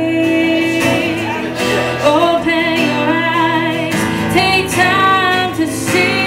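A woman singing to her own acoustic guitar, holding long notes with a wavering pitch.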